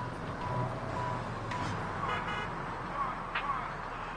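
Street traffic noise with a brief car horn toot about two seconds in.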